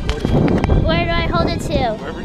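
A child's high, wordless voice rising and falling about a second in, over a loud low rumble of wind and handling noise on the camera's microphone, with a sharp knock or two as a hand covers it.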